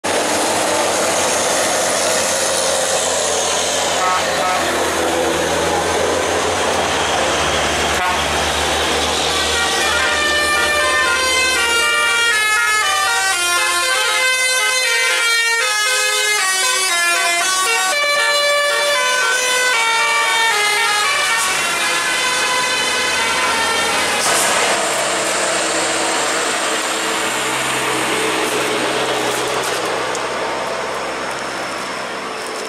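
Heavy truck engines labouring up the grade with road noise. About ten seconds in, an intercity bus's multi-tone 'telolet' horn plays a quick melody of stepped notes for about twelve seconds, then engine noise returns.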